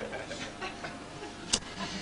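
A single sharp click about one and a half seconds in, over quiet room noise with a few faint small taps.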